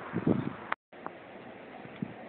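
Faint, steady background hiss with no engine running. Near the start the sound cuts out completely for an instant, a break in the recording, with a small click just after.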